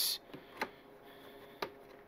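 Two faint, sharp clicks about a second apart as hands work on a motorcycle's plastic front fairing, over a quiet room with a faint steady hum.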